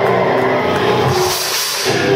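Live heavy metal band playing, mostly distorted guitar held on sustained notes. The low end drops out briefly near the end before the full band comes back in.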